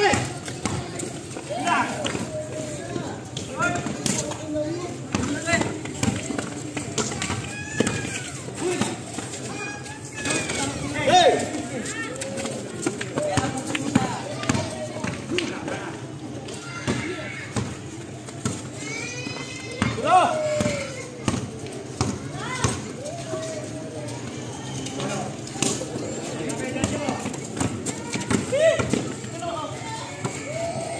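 Outdoor pickup basketball game on a concrete court: the ball bouncing, players' shoes scuffing and running, and players calling and shouting to each other.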